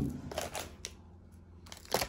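A sharp knock at the start, then light crackling and clicks of snack packaging being handled, with another short knock near the end.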